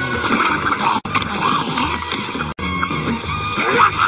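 Movie soundtrack: music mixed with sound effects, with animal-like vocal noises toward the end.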